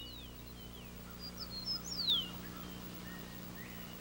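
A small bird chirping and whistling, in two short runs of high notes with a falling whistle about two seconds in, over a steady low hum.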